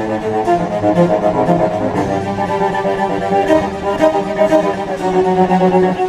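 Solo cello played with the bow: a melody of held notes, each lasting about a second before moving to the next.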